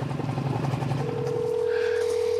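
A low engine hum fades out in the first second or so. About halfway through, a phone on speaker starts a steady single ringing tone, the ringback of an outgoing call waiting to be answered.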